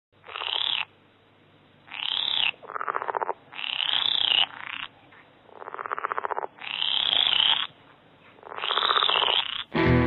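Animal calls in short, rapid pulsed trills, about seven of them, each under a second, with quiet gaps between. Guitar music comes in near the end.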